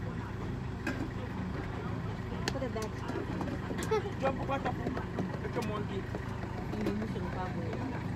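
A van engine idling steadily, a low hum under faint voices and a few clicks.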